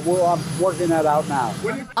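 A helicopter running steadily on the ground, with a voice speaking over it.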